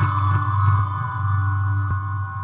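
Ambient electronic music from an Elektron Model:Cycles FM groovebox run through a Hologram Microcosm effects pedal: sustained ringing tones held over a steady low drone, with a few light clicks.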